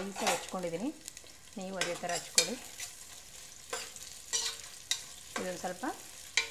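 Sliced onions frying in hot oil in an aluminium pressure cooker, sizzling, while a spatula stirs them with repeated scrapes and knocks against the metal pot.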